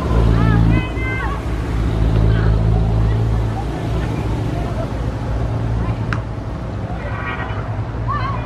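Distant shouts and calls from players on a training pitch, short rising and falling cries, over a steady low hum, with one sharp click about six seconds in.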